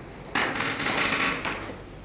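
Handling noise: a rustle starting about a third of a second in and lasting just over a second.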